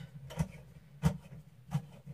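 Three short, sharp clicks about two-thirds of a second apart, from handling a lamp while fitting its light bulb.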